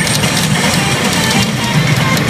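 Hana no Keiji pachinko machine playing loud rock music with electric guitar and drums during a battle animation.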